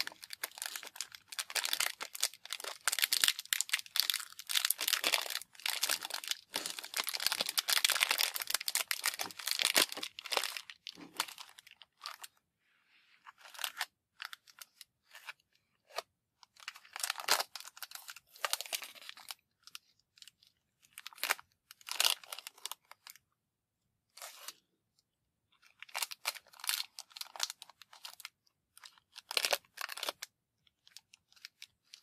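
Clear plastic wrapper crinkling and tearing as it is peeled off a cardboard box of matches: dense crinkling for about the first ten seconds, then shorter bursts with pauses between.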